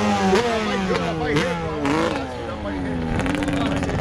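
Yamaha Banshee's two-stroke twin with aftermarket pipes, ridden hard in a wheelie. Its engine note sinks steadily in pitch as the rider backs off, with a few quick rises and falls of the throttle.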